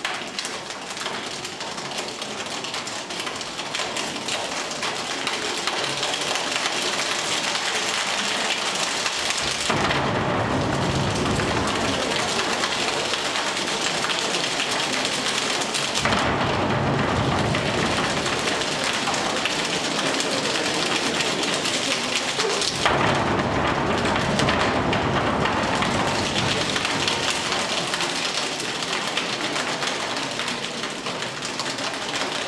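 A choir's body-percussion rainstorm: a hiss of many hands that grows steadily louder, joined about ten seconds in by a heavy low rumble of slapping and stamping for thunder.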